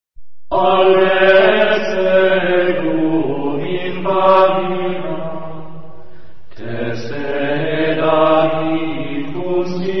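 Chanted mantra sung in long, slow phrases with held notes, starting abruptly about half a second in after a brief silence; a new phrase begins about six and a half seconds in.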